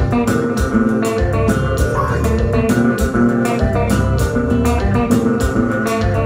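Live konpa band playing an instrumental passage: electric guitars and bass guitar over drums keeping a steady beat.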